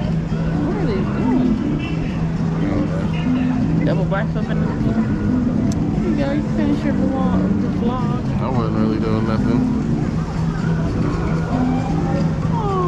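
Background music with a steady low bass note and notes stepping above it, under the chatter of many people's voices.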